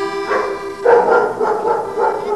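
Accordion playing held notes. About a second in, a louder rough burst of sound lies over it.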